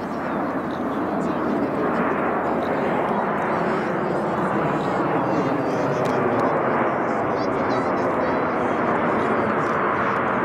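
Jet noise from the Red Arrows' formation of BAE Hawk T1 trainers, each powered by a single Adour turbofan, as they pull up into a vertical climb. The noise swells over the first two seconds and then holds steady and loud.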